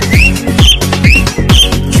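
Electronic dance beat with a kick drum about twice a second, and over it four short, whistled parrot calls, each rising and dropping in pitch.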